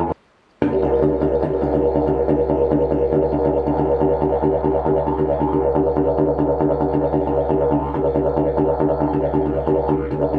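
Carbon-and-kevlar-fibre double-slide didgeridoo played as a deep drone with a quick pulsing rhythm. It cuts out for about half a second near the start, then comes back in and keeps going steadily.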